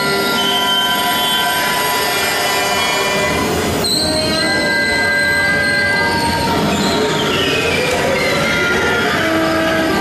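Bass clarinet and accordion playing contemporary concert music: a dense cluster of clashing held notes, with a sharp new attack about four seconds in and a pitch sliding down through the later half.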